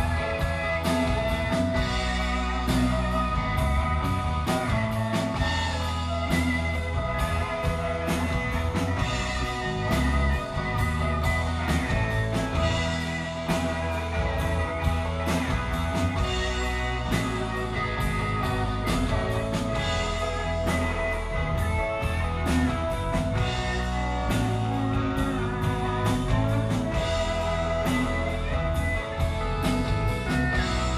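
Live rock band playing an instrumental passage: pedal steel guitar and electric guitar over a steady drum beat.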